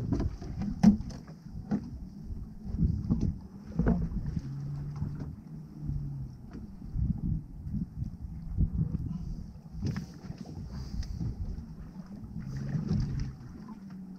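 Water slapping against the hull of a small boat drifting at sea, with wind on the microphone and scattered knocks and rustles as a fish is handled in a cloth.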